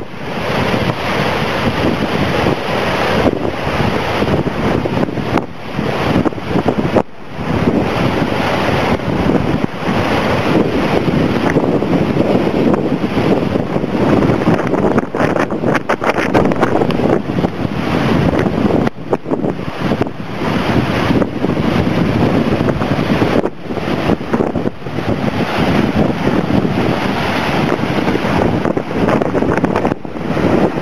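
Heavy storm surf from a hurricane's swell breaking and washing over rocks, mixed with strong wind buffeting the microphone. It is a loud, steady rush with a few brief drops.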